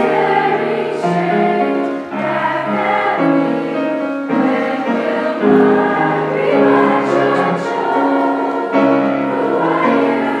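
Children's school choir, mostly girls' voices, singing together in held notes, with short pauses for breath between phrases.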